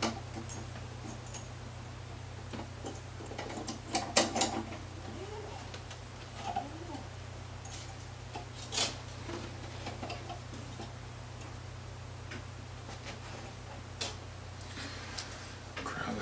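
Light, scattered clicks and taps from guitar strings and metal hardware being handled on a hollowbody electric guitar during restringing, with a small cluster of sharper clicks about four seconds in. A steady low hum runs underneath.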